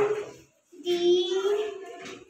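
A young boy's voice drawing out the letter "D" in a long sing-song tone about a second in, spelling "Sunday" aloud letter by letter; the end of a previous held note cuts off just at the start.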